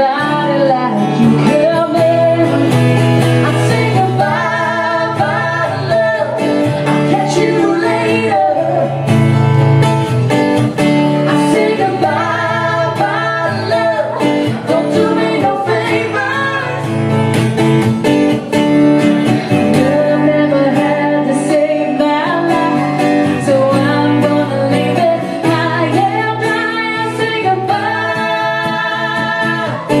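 A woman singing a song live into a microphone, accompanied by an acoustic guitar.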